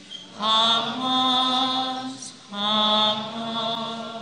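A slow hymn sung in unison in long held notes, with two phrases of about two seconds each and a short breath between them.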